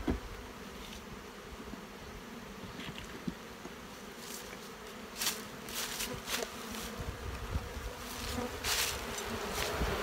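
Honey bee colony humming steadily in an open hive: the queenless hum of a colony that has lost its queen. A few short clicks and scrapes come over it in the second half.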